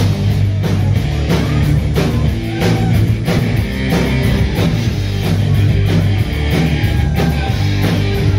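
Live rock band playing: electric guitar, bass and drums with a steady beat, loud and full, with no vocals in this stretch.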